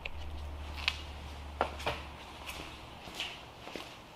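Quiet workshop sound: a low steady hum that fades out about three seconds in, with a few faint taps and shuffling footsteps.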